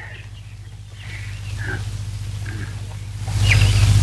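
Old film soundtrack in a pause between lines of dialogue: a steady low electrical hum under faint small movement sounds, then a louder low swell with some hiss in the last second.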